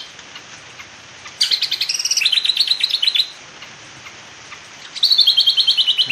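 High-pitched, rapid pulsing trill from a calling creature, in bursts of about two seconds: one starting about a second and a half in that steps down in pitch partway through, and another starting near the end.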